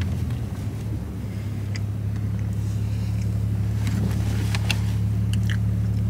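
Steady low hum of a stationary car's engine idling, heard from inside the cabin, with a few faint clicks in the second half as a cookie is bitten and chewed.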